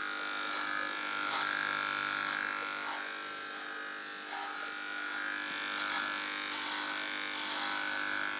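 Electric dog clippers buzzing steadily as they cut through a dog's coat, the level rising and dipping slightly as the blades move through the fur.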